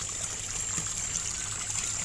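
Water trickling steadily through a constant-flow aquaponic system's channel, with a thin, steady high tone over it.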